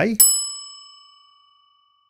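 A single bell-like chime struck once, ringing with several high tones and fading away over about a second and a half.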